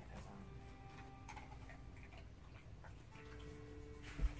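Faint, sparse light clicks over low room noise, with soft background music tones coming in near the end.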